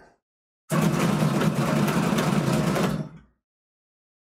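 Dice rolled in the bowl of an automatic dice roller: a loud mechanical rattle and whir starts about a second in, runs for a little over two seconds, then dies away as the dice settle.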